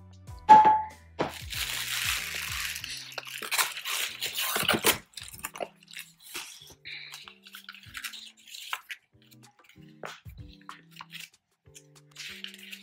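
Clear plastic wrapping crinkling and rustling as it is handled and pulled out of a cardboard box, busiest in the first five seconds, then scattered crinkles, over background music. A single sharp knock comes about half a second in.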